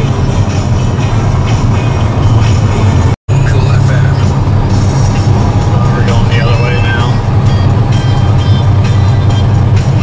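Steady low drone of a heavy truck's diesel engine and road noise inside the cab at highway cruise, with music playing over it. The sound cuts out for a split second about three seconds in.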